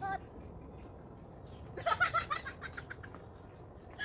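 Women's high-pitched voices: a brief call right at the start, then about two seconds in a loud, choppy burst of exclamation lasting about a second, over a faint steady background hiss.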